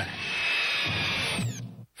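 A loud, shrill whirring hiss with a steady high whine, the sound effect of Phantasm's flying silver sphere. A falling whistle comes near the end, and the sound stops abruptly about a second and a half in.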